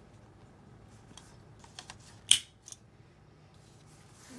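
A ring-bound planner being handled on a desk: one sharp click about halfway through, with a few faint ticks before it and a couple of lighter clicks just after.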